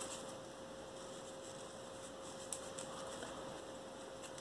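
A faint, steady hum, one constant tone over low room noise, with a single light click about two and a half seconds in.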